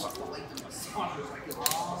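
Faint voices and chatter under a general hubbub, with a couple of sharp clicks near the end.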